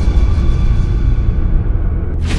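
Horror-film soundtrack music: a loud, low, steady rumbling drone.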